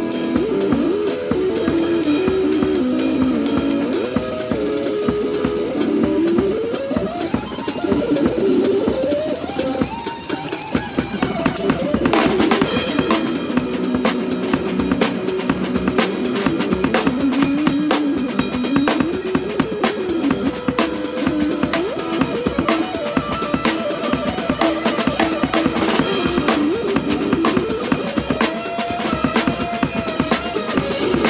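Live blues-rock jam: electric guitar playing a lead line full of string bends over a snare drum and cymbals, with a tambourine shaken along for the first twelve seconds or so before it stops abruptly.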